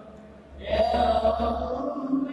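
Men's voices chanting together in a steady religious chant. It drops away briefly at the start and comes back loud about half a second in.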